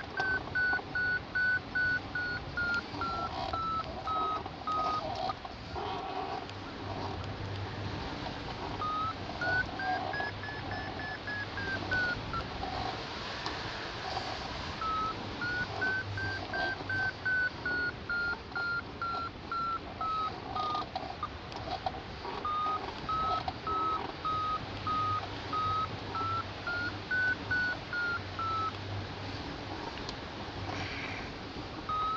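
Hang glider variometer beeping in quick short pulses, its pitch rising and falling as the climb rate changes, in several runs with short pauses between: the sign of climbing in a weak, patchy thermal. A steady rush of air runs underneath.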